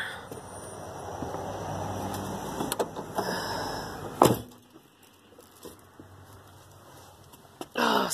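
Rain noise coming in through an open van door, then the door is pulled shut with one loud thud about four seconds in, after which the rain is muffled and the inside of the van goes much quieter.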